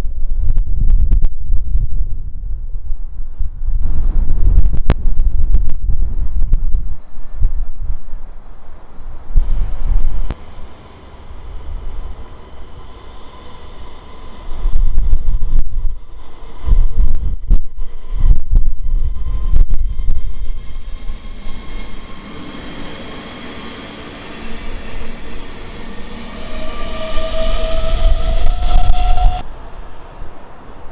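Electric multiple-unit passenger train on the rails, its traction motors giving a whine that rises in pitch over the last several seconds as it pulls away. Wind buffets the microphone throughout with low gusts.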